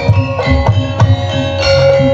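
Live jaranan gamelan accompaniment: hand drums beating a quick rhythm over struck gongs and bronze gong-chimes, with a long ringing tone in the second half.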